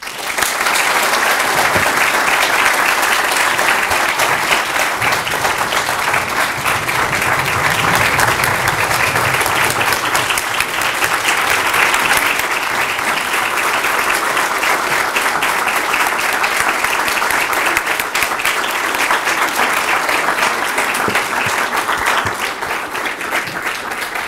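Sustained applause from a large audience giving a standing ovation. It starts suddenly, holds steady and dense, and eases a little near the end.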